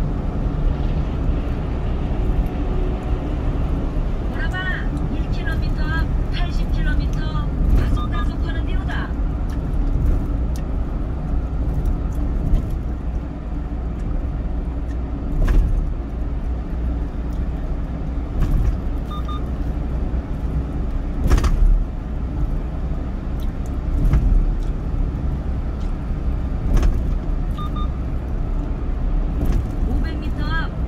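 A car driving at expressway speed: steady low tyre and road rumble with engine noise, broken by a few brief knocks.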